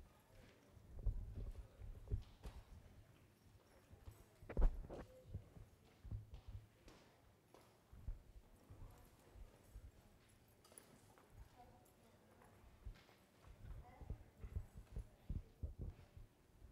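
Faint, scattered low knocks and thumps, with one sharper knock about four and a half seconds in and a quick run of them near the end.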